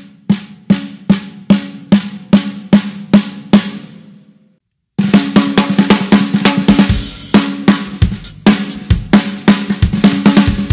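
Snare drum struck in steady single strokes, about two and a half a second, close-miked with an sE Electronics V7x dynamic microphone with EQ and mixing applied; the strokes stop about three and a half seconds in and ring out. After a short silence, a busy drum-kit pattern starts about five seconds in, with snare, kick drum and cymbals, now recorded through a Shure SM57.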